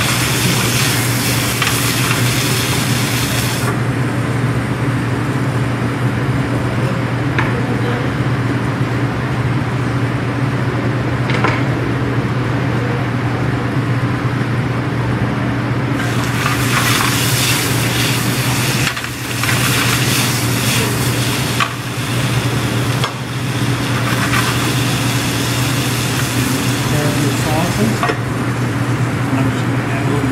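Sliced potatoes and onions sizzling in a frying pan over a gas burner as they brown toward blackened edges, with a steady low hum underneath. The sizzle drops back after a few seconds, comes up strongly again about halfway through, and eases near the end.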